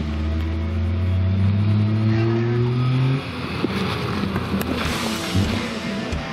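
Daihatsu Mira e:S kei car's small three-cylinder engine revving up as the car accelerates away, its pitch rising steadily for about three seconds, then the engine note drops away abruptly as the driver lifts off.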